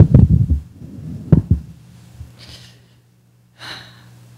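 Handheld microphone being handled as it is passed from one person to another: loud low thumps and rustling, the last about a second and a half in. Then two short breaths into the microphone near the end, over a steady electrical hum.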